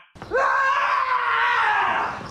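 A person's single long, high scream that starts just after a brief gap and slides slightly down in pitch as it is held.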